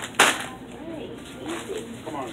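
A short, loud scuffing burst about a quarter second in, typical of a handheld phone's microphone being bumped or rubbed while it is swung about, followed by faint voices in the background.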